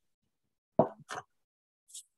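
A pause in speech broken by short mouth sounds: a quick pop or clipped syllable about a second in, then a brief breath just before speech resumes.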